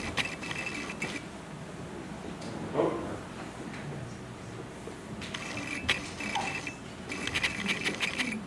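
Computer mouse scroll wheel ratcheting through its detents in quick bursts of fine clicks: one burst right at the start, then two more in the last three seconds.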